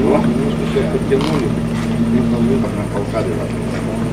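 Indistinct voices over a steady engine hum that weakens a little under three seconds in.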